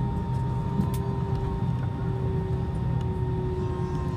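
Jet airliner cabin noise while taxiing slowly on the apron: a steady low rumble with a constant whine from the engines at idle, one tone sinking slowly in pitch.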